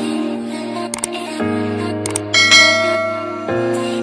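Background music with sustained chords, overlaid by a subscribe-button sound effect: mouse clicks about one and two seconds in, then a bright bell ding at about two and a half seconds that rings out.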